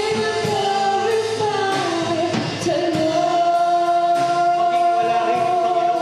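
A man singing a gospel song with band accompaniment and a steady drum beat. He holds one long note through the second half.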